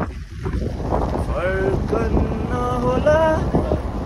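Wind buffeting the microphone and road rumble from a vehicle moving with its window open. Indistinct voices come through the wind for about two seconds in the middle.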